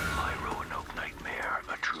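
Whispered voices over high wavering tones that rise and fall.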